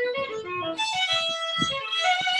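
Fiddle playing a lively jig tune, note following note in quick succession, with a plucked string accompaniment beneath.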